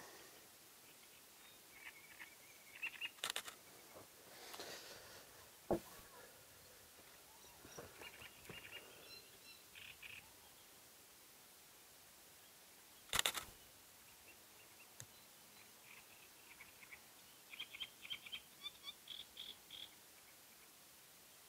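Faint calls and song of small birds, short runs of repeated high notes that come and go, loosest near the end. Twice, about three seconds in and again around thirteen seconds, a sharp camera shutter clicks; the second is the loudest sound.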